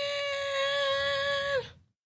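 A person's voice drawn out on one high held note for about a second and a half, dipping slightly in pitch as it trails off.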